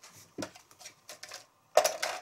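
Small hard clicks, then a louder run of rattling clicks near the end, from a knitting machine's cast-on comb being handled and set down against the metal needle bed.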